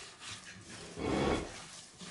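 A hand rubbing and squeezing crumbly dough of flour, oil and sour cream in a glass bowl, a soft rustling scrape, with a louder stretch of rubbing about a second in.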